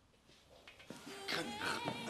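About the first second is near silence; then a high, wavering voice starts, a drunk young woman whining and moaning rather than speaking words.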